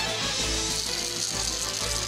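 Television series theme music: held notes over a steady low bass.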